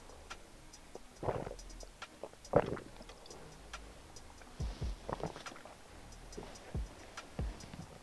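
Kava being drunk down in one go from small bowls: quiet gulps and breaths, two short ones in the first three seconds, then a few soft low knocks in the second half, with faint scattered ticks throughout.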